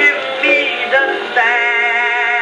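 Edison Diamond Disc phonograph playing a 1921 acoustic-era recording of a blues song with jazz band. The sound is narrow and thin, with no treble above the range of the early recording.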